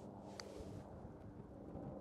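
A single faint click of a putter striking a golf ball about half a second in, over a low outdoor background hiss.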